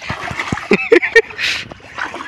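Short spoken exclamations over water sloshing around people wading through a shallow pond while dragging a fishing net, with a brief splash about one and a half seconds in.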